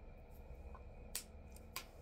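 Two short, sharp clicks about half a second apart, over a faint steady low hum.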